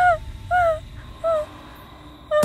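An animal call: a short rising-and-falling note sounded three times, the first loudest and each later one shorter and fainter.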